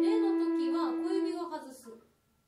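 A concert flute holds a steady low E, played with the right-hand middle finger added, and fades out about a second and a half in. A woman talks over it.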